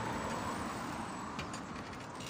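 A car driving past, its road noise slowly fading as it moves away.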